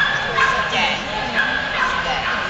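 Dog giving short, high-pitched yips and whines, about four in two seconds.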